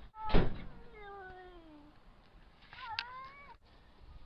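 Domestic cat meowing twice: a long call falling in pitch about a second in, then a shorter, bending call near the end. A short loud thump just after the start is the loudest sound.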